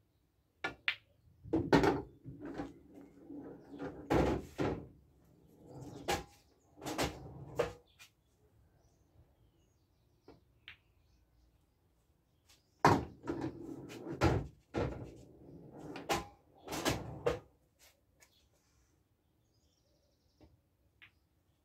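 Two pool shots about twelve seconds apart. Each starts with sharp clicks of cue tip and balls striking, followed by a run of knocks and rolling as balls hit cushions and drop into a pocket.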